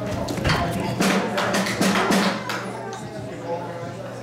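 Sharp wooden clicks in a steady beat, about two a second, from the band's drummer, over a steady low hum from the stage amplifiers.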